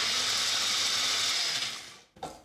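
Compact personal blender, its cup pressed down onto the motor base, running steadily at full speed as it purées soaked cashews and water into a thick cream, then winding down near the end.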